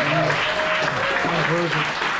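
Audience applauding, with voices talking over the clapping.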